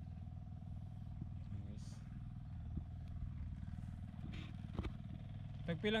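A small engine running steadily at one speed.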